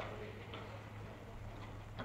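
Pause in speech on an old archival courtroom recording: a steady low hum and hiss, with a few faint ticks.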